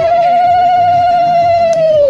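Conch shell (shankha) blown in one long steady note, its pitch sliding up as it starts and falling away at the end.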